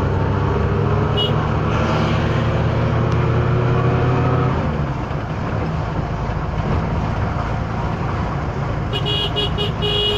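Car interior noise while driving: a steady low engine and road drone that eases about four and a half seconds in. Near the end a car horn gives a quick series of short toots, with one short beep about a second in.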